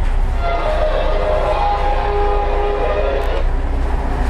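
A steady low machine rumble with a held chord of several steady tones, like a horn, sounding for about three seconds before it cuts off.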